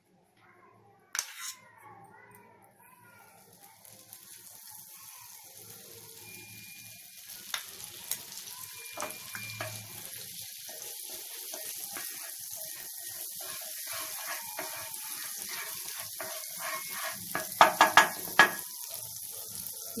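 Butter sizzling in a hot pan, the hiss growing steadily louder as the pan heats. There is a single knock about a second in and a quick run of utensil clinks against the pan near the end.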